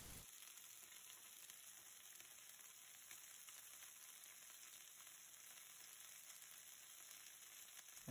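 Scallops searing in hot oil in a frying pan on high heat: a faint, steady sizzle.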